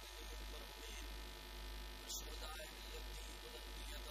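Steady electrical buzz with mains hum, carried through the sound system, with a brief high hiss about two seconds in.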